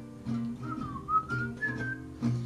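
A boy whistling the melody over his own strummed acoustic guitar. The whistle comes in about a third of the way through, dips, then climbs in steps to a higher held note.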